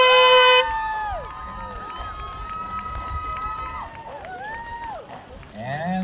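An air horn sounding the race start, held and then cutting off about half a second in. It is followed by a crowd cheering with whoops and shouts, one call held for a few seconds.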